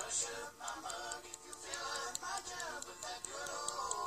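A boy singing while strumming an acoustic guitar.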